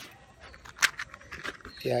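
A sharp click a little under a second in, then a few lighter clicks and rustles over low background noise. A man's voice starts at the very end.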